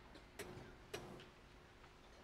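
Near silence in a large hall, broken by two short, sharp clicks about half a second apart, with a faint steady hum underneath.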